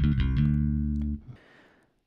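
Electric bass played through the Zoom MS-60B's SansAmp-modelled BassDrive effect with its Mid knob cut to −10, giving a scooped tone with the 250–500 Hz range pulled down. A few quick notes then one held note, which stops a little over a second in.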